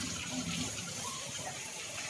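Tap water running steadily into a kitchen sink while dishes are being washed.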